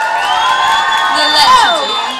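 Audience cheering and screaming, many high voices at once, with one scream falling in pitch about one and a half seconds in.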